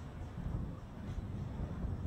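Faint low rumble of outdoor field ambience picked up by an open microphone, like wind buffeting it.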